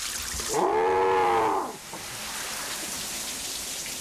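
Water in a sauna making a steady rain-like hiss, louder at the very start. About a second in, a short pitched tone rises and falls over roughly a second.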